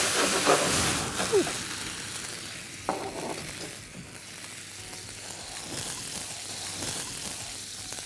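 Mushrooms and butter sizzling hard in a frying pan as brandy burns off in a flambé. The sizzle is loud at first and dies down after about two seconds as the flames subside.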